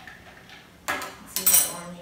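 Metal spoon stirring a glass of ice, clinking against the glass and ice: three sharp clinks in the second half.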